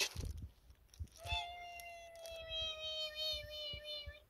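A faint, thin, high-pitched squeaky call, like a tiny voice, starts about a second in and is held for nearly three seconds, sliding slowly down in pitch.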